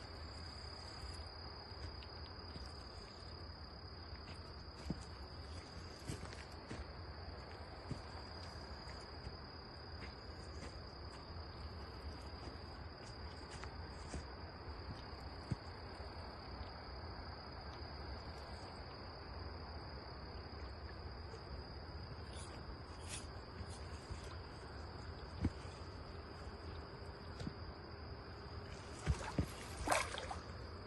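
Steady, high-pitched chorus of night insects running throughout, with scattered small clicks. A brief splash of water comes near the end as the landing net goes in.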